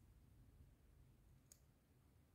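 Near silence with a single faint click about one and a half seconds in, from a thin metal rod being set against a metal TV antenna plug.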